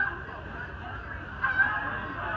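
A goose honking twice, once at the very start and again about one and a half seconds in.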